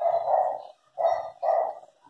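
A dog barking three times: a longer bark, then two short ones in quick succession.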